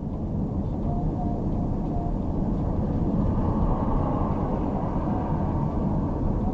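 Steady low rumble of a lorry cab on the move: the HGV's diesel engine and its tyres on a wet road.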